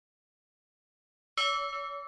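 Silence, then about one and a half seconds in a single bell-like chime is struck and rings on with several clear tones, opening the background music.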